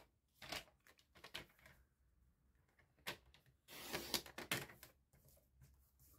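Faint handling of a plastic paper trimmer and a sheet of cardstock on a craft mat: scattered light clicks and knocks, a sharper click about three seconds in, and a brief rustling slide of paper about four seconds in.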